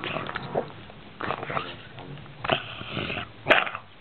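Bulldog making a run of short vocal sounds close to the microphone, some grunt-like and some pitched and whiny, with a sharp burst of breath about three and a half seconds in.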